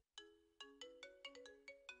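A mobile phone ringtone, faint: a quick melody of about a dozen short, separate notes that each ring on briefly.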